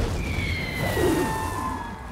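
Animated-film explosion and crash as a burning ship hits the water against an ice cliff: a loud rumbling blast with crashing and splashing that fades over two seconds, with a few whining tones sliding down in pitch over it.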